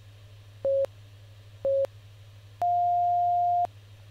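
Workout interval timer counting down: two short beeps a second apart, then one long, higher beep marking the end of the work interval.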